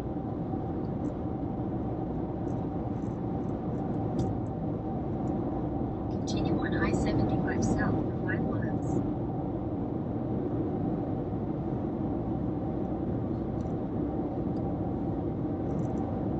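Steady road and tyre noise heard inside a car cruising at highway speed, a constant low rumble with a faint steady hum. About six seconds in, a short run of higher, wavering sounds lasts a couple of seconds.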